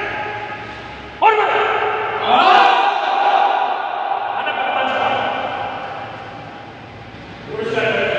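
A man's long drawn-out shouted commands, as in karate drill: one call about a second in, then a longer one that rises in pitch at about two seconds and is held for several seconds before fading, with another starting near the end. The calls echo in a large hard-floored hall.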